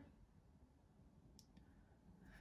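Near silence: room tone, with one faint, brief click about a second and a half in.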